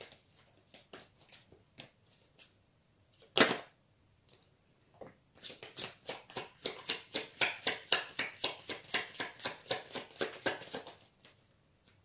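A deck of tarot cards being shuffled by hand: a few soft taps, one sharper snap about three and a half seconds in, then a long run of quick, even card slaps, several a second, lasting about five seconds.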